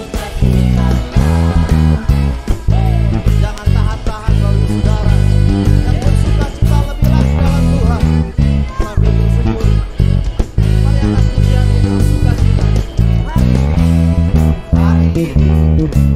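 Pedulla MVP5 five-string electric bass playing the song's intro line, a descending run of E, D#, C#, A, G#, F#, along with a full worship-band recording; the bass notes are loud and sustained.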